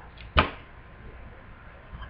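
A single brief thump or click about half a second in, then faint room tone.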